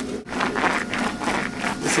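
Small hand roller rubbing back and forth over a resin-soaked fibreglass mat on a wooden table, about five quick strokes a second starting a moment in. The rolling pushes the trapped air out of the wetted mat.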